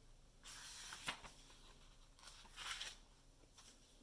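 Faint rustle of paper book pages being handled and turned: two soft swishes with a small tick between them.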